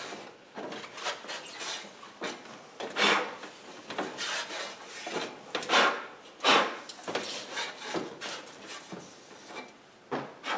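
A cloth rag wiping across an oven door's inner glass pane in a dozen or so short, irregular rubbing strokes, clearing off dust and debris.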